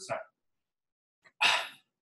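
A man's breath drawn in sharply through the mouth between phrases, about one and a half seconds in, after the end of a spoken word and a pause of silence.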